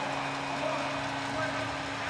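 Hockey arena crowd noise, voices blurred into a steady wash, with a steady low hum beneath it.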